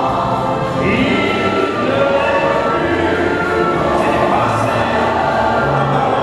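A massed choir of about a thousand voices singing with orchestral accompaniment, one steady full chorus.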